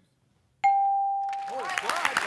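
A single bell-like game-show reveal chime, struck about half a second in and ringing away over a second and a half. It marks the reveal of a survey answer's score on the board.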